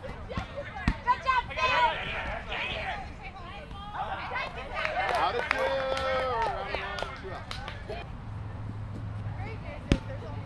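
Players shouting to each other across an open field, the words unclear, with a single sharp smack of a foot kicking a rubber kickball near the end.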